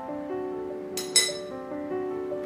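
Instrumental background music with long held notes; about a second in, two quick ringing glass clinks, the loudest sounds, as the glass pitcher is handled before pouring.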